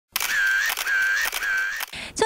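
Three camera-shutter sound effects in quick succession, each about half a second long with a brief high tone inside, used as a photo-snapping transition.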